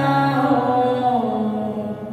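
Gurbani kirtan in Raag Malkauns: a sung voice holds and slides down a long note over a harmonium drone. The drone drops out about a second in, and the music dies away near the end.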